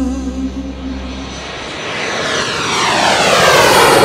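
Airplane flyby whoosh, swelling from about halfway through to its loudest near the end, with a sweeping pitch as it passes.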